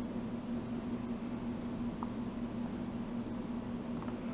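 Steady low hum with an even hiss of background room noise, and one faint tick about halfway through.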